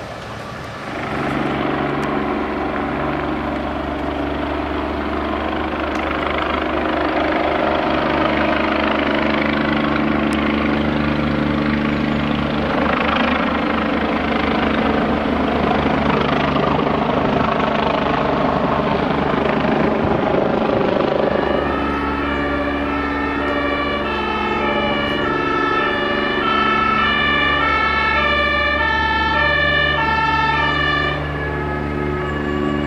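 A helicopter flying overhead, a loud steady rotor and engine drone. About two-thirds of the way in, an emergency vehicle's two-tone siren starts, stepping back and forth between two pitches over the continuing drone.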